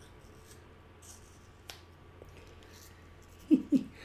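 A toddler quietly biting and chewing a raw apple, with a single sharp crunch or click a little under two seconds in. Near the end, two short loud bursts of a man's laughter.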